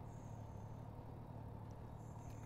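Motorcycle engine idling, heard as a faint, steady low hum.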